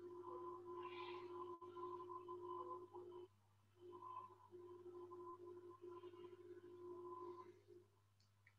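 Near silence: a faint low hum with two faint steady tones that drop out briefly twice.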